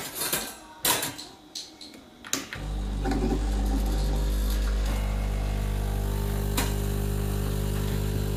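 Home espresso machine: a few knocks and clicks as the portafilter is locked in and a cup set down, then about two and a half seconds in the pump starts with a steady, loud hum as a shot is pulled.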